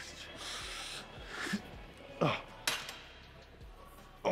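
A weightlifter's forceful exhales and short grunts of effort during a set of cable pullovers, the loudest about two seconds in. A sharp click follows about half a second later.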